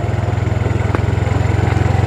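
Small motorbike engine running steadily with a low, even pulse, held in first gear on a steep descent.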